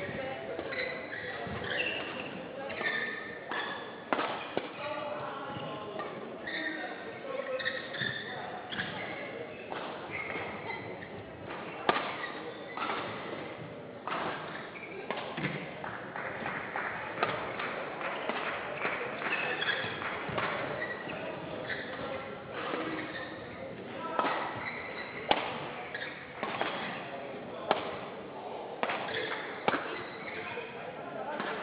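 Badminton rally in a large hall: rackets striking the shuttlecock, sharp cracks at uneven intervals, the loudest about 12 and 25 seconds in, over a steady murmur of voices.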